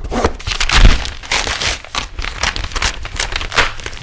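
Paper and card mail packaging being torn open and crinkled: a run of rustling and tearing from a manila envelope and box mailers, with a heavy thump a little under a second in.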